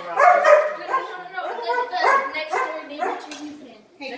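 German Shepherd barking and whining in a string of short, repeated calls.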